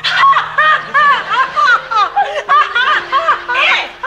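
A woman laughing: a long, rapid string of high-pitched 'ha-ha' bursts, about three a second.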